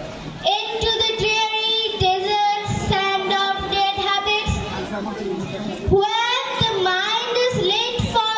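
A girl singing solo into a microphone, holding long, steady notes, with low tabla strokes beneath.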